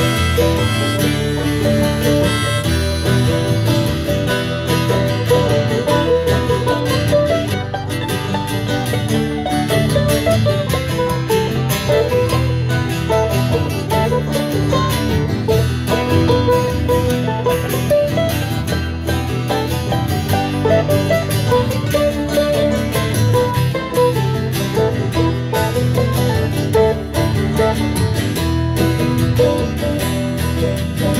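Acoustic string band playing an instrumental break with no singing: strummed acoustic guitar, mandolin and banjo in a bluegrass style.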